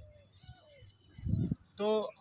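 A bird calling faintly, a few short low calls in the first second, followed by a soft low thump, before a man's voice starts near the end.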